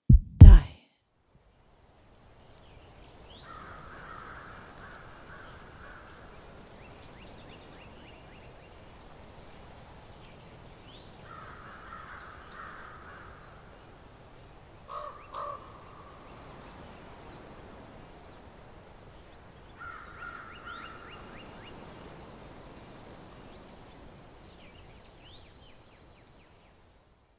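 Faint woodland ambience of birds calling: short high chirps, with three spells of harsher repeated calls and two louder calls about halfway, over a low steady background.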